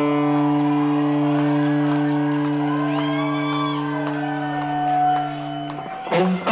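Live rock band holding one long, steady low chord on electric guitars and keys, with shouts from the crowd over it. The chord cuts off sharply just before the end.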